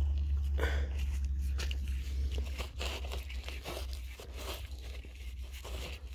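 Gritty crunching and scraping of ash and soil as a gloved hand works a buried jar loose and pulls it out, in irregular bursts, over a steady low rumble that fades after a couple of seconds.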